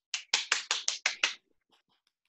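One person clapping: about seven quick, even claps in just over a second.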